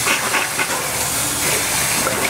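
Washroom tap running steadily into a sink while water is splashed onto a face from cupped hands.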